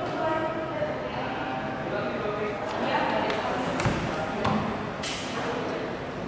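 Indistinct background voices in a large room, with a couple of soft thumps in the second half.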